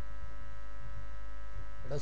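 Steady electrical mains hum from a public-address system, a low hum with a row of fainter steady higher tones above it. A man's voice through the microphone starts right at the end.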